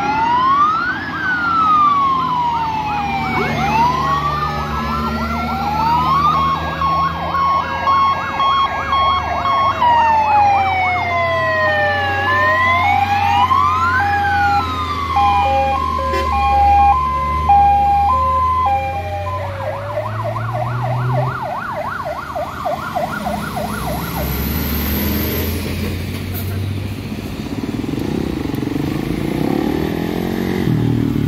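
Several fire-engine sirens sounding at once as a convoy of fire trucks passes: slow rising-and-falling wails, rapid yelps and a two-tone hi-lo alternation, over the rumble of the trucks' engines. The sirens stop about three-quarters of the way through, leaving vehicle engines and a motorcycle passing near the end.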